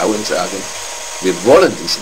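Speech only: a man talking in short phrases, with a brief pause about a second in.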